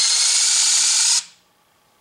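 Electric shift actuator motor on a New Process 143 transfer case whirring steadily as it shifts the transfer case into two-wheel drive, cutting off suddenly after about a second and a half.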